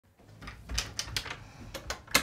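A quick run of light clicks and knocks as a wooden cupboard door is unlatched and pulled open.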